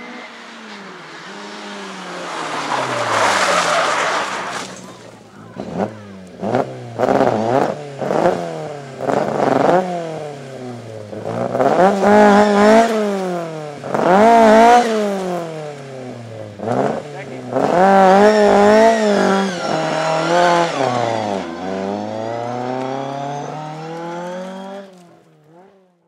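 Rally car engine revved hard again and again, its pitch climbing and dropping many times over, after a rush of tyre noise in the first few seconds; the sound fades out at the end.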